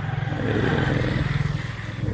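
Motorcycle engine running close by, with a steady rapid pulsing.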